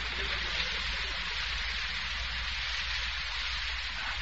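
Steady hiss with a low hum underneath and no voices: the background noise of an old 1940s radio broadcast recording.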